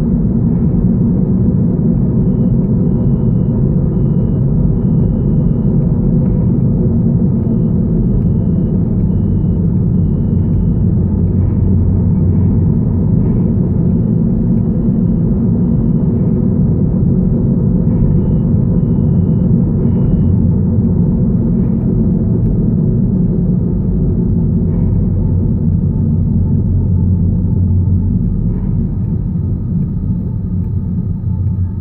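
Steady low road and engine rumble inside a moving car's cabin, easing slightly near the end as the car slows in traffic.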